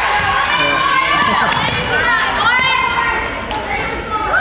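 Many young voices shouting and cheering at once in a gymnasium, the noise of players and spectators reacting to a won volleyball point.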